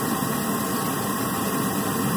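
Van engine idling steadily, heard close up in the open engine bay.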